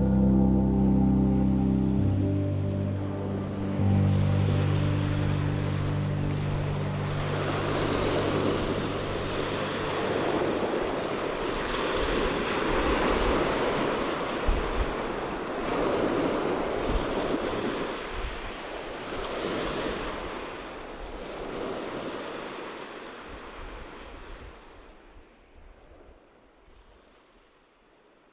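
The last held low notes of an ambient music track die away over the first several seconds as ocean surf comes up, waves washing in and ebbing in swells about every four seconds. The surf fades out near the end.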